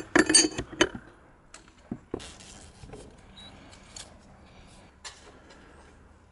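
Open-end wrench clinking against the metal fittings and valves of a radiant-heat PEX manifold as they are tightened: a quick cluster of sharp metallic clinks in the first second, then scattered lighter clicks.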